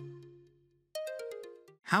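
Short electronic chime jingle: a low note rings and fades, then a higher note about a second in rings and fades in turn.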